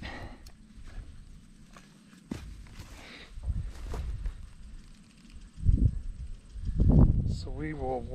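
Handling noise of fence wire and a plastic gate handle being worked at a steel T-post: scattered light clicks and rustles, with two louder low thumps in the second half.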